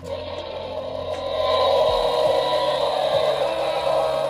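Mattel Epic Roarin' Tyrannosaurus Rex toy playing its electronic roar through its built-in speaker. It starts quieter and swells about a second and a half in to a loud, sustained roar.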